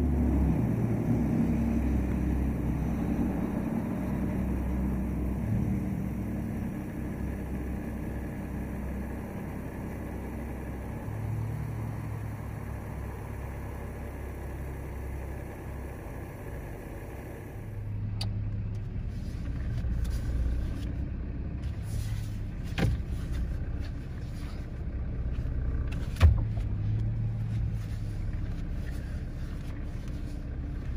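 Jeep Wrangler engine running at low speed, a steady low rumble heard from inside the cab. A few sharp clicks come in the second half, the loudest one near the end.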